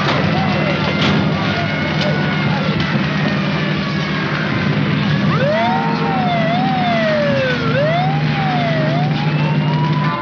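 Several emergency-vehicle sirens wailing over a steady low engine rumble and a noisy background. A louder siren starts about five seconds in and swoops repeatedly up and down.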